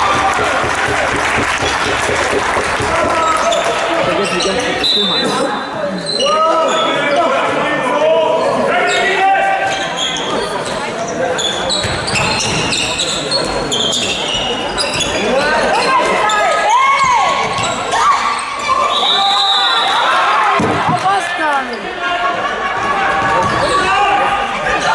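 Handball game on an indoor sports-hall court: the ball bouncing on the floor repeatedly, shoes squeaking in short chirps, and players calling out, all echoing in the large hall.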